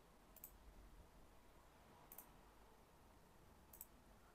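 Three faint computer mouse clicks, about a second and a half apart, over near silence.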